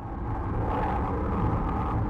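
Deep, steady rumble of a rocket launch, fading in from silence right at the start.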